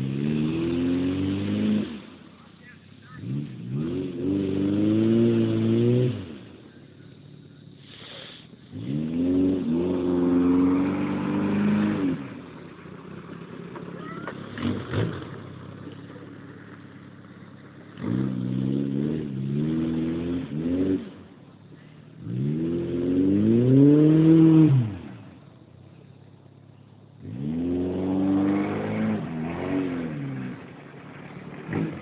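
Chevrolet Chevette's four-cylinder engine revved hard in repeated bursts, about six times. Each burst climbs and then drops back, with the engine running quieter in between, and the loudest comes about two-thirds of the way through.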